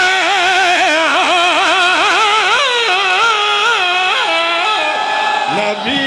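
A man singing one long melismatic phrase of majlis recitation, the pitch wavering in quick ornamental turns. It steps down and breaks off shortly before the end, when a new phrase begins.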